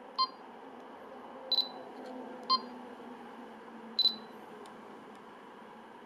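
Canon EOS M6 mirrorless camera beeping as its rear buttons and dial are operated: four short, high electronic beeps, near the start, at about one and a half seconds, two and a half seconds and four seconds. The second and fourth are slightly longer double beeps, and a couple of faint clicks follow over a low steady background hum.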